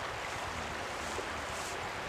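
Steady rush of flowing river water around an inflatable raft.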